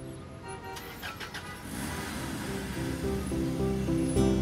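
A rushing noise of street traffic going by swells through the middle. A rhythmic outro music theme with pulsing notes starts about three seconds in.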